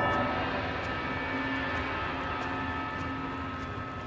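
A steady low drone with a few faint held tones over a soft hiss, fading slowly: the sustained ambient tail of the soundtrack after the music drops away.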